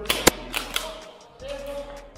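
Airsoft gun shots: a quick run of sharp cracks in the first second, the loudest about a quarter-second in.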